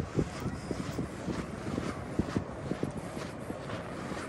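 Wind buffeting the microphone: irregular low thumps over a steady outdoor hiss.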